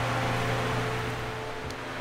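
Steady low hum with an even hiss from a running ventilation fan, with one light click near the end.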